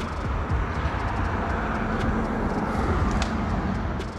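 Steady background noise with a faint low hum through the middle of it, and a few faint ticks.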